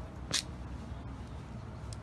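Low, steady background rumble with a single sharp click about a third of a second in.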